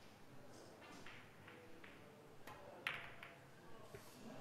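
A few sharp clicks of a pool cue striking the cue ball and the balls knocking together on a Chinese eight-ball table, the loudest about three seconds in, against near silence.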